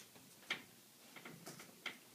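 A few faint, short taps and clicks, about four in two seconds, from props being handled on a tabletop.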